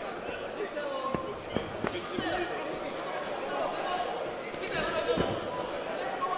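Amateur boxing bout: dull thuds of gloved punches and footwork on the ring floor, a few of them sharper, under the voices and shouts of the crowd.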